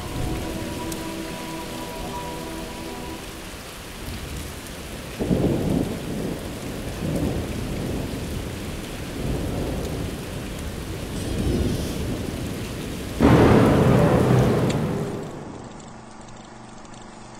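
Steady rain with thunder: a sudden clap about five seconds in, a few rolling rumbles after it, and the loudest peal near the end, dying away.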